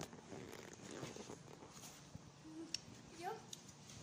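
Faint, soft speech in a small room over a steady low hum, with a short spoken "yup" near the end and a few sharp clicks scattered through.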